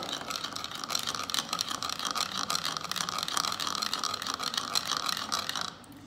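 Metal spoon briskly stirring a salad dressing in a small bowl: rapid, continuous clinking and scraping of the spoon against the bowl's sides, which stops just before the end.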